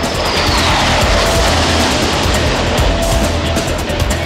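Rushing jet noise of two Harrier GR9 jump jets flying past, its pitch falling through the first second, under loud background music with a heavy beat.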